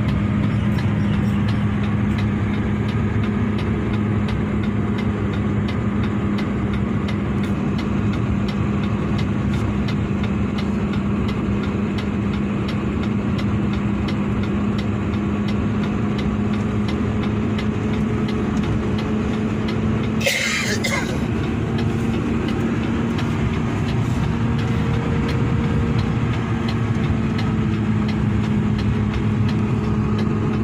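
Steady engine and road drone of a heavy vehicle heard from inside its cab while driving, with a constant low hum under it. A brief burst of hiss-like noise comes about twenty seconds in.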